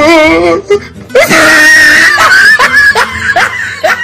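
Exaggerated comic wailing: a quavering, wavering cry, then a loud high-pitched scream about a second in, followed by a run of short rising yelps, about three a second.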